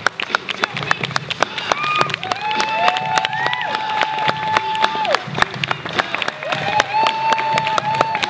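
Audience applauding with dense, steady clapping. Twice, long held high-pitched whoops from several voices rise over the clapping.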